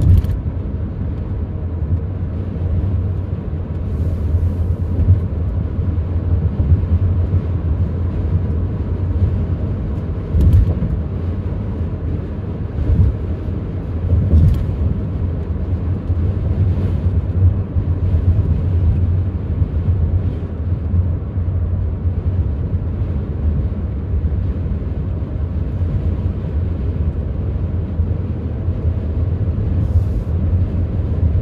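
Steady low rumble of road and engine noise inside the cabin of a 2018 Dodge Grand Caravan minivan cruising on a highway, with a few brief knocks, at the start and again about ten and fourteen seconds in.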